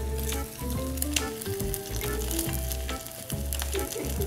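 An egg frying in hot fat in a small pan, sizzling steadily, under background music with a steady bass beat.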